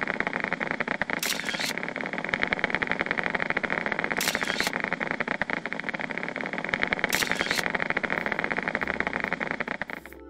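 Needle EMG machine's loudspeaker playing the triceps muscle's electrical activity as a dense, rapid crackle of clicks during a rising voluntary contraction: many motor units are being recruited, so the individual motor unit potentials run together. Brief louder, hissier bursts come three times.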